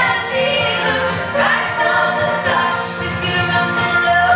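Live band music: several voices singing together over acoustic guitar, banjo, electric bass and a cajón keeping a steady beat.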